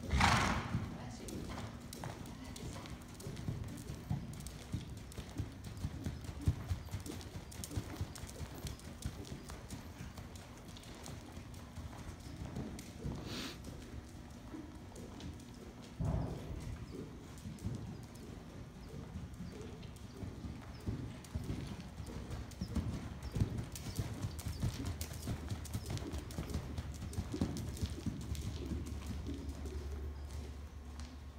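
Hoofbeats of a ridden horse moving over sand arena footing, a steady run of footfalls. A sudden loud noise comes right at the start.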